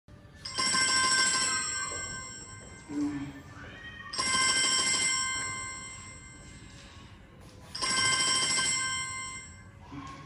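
A bell rings three times, about three and a half seconds apart, each ring loud for about a second and then fading out.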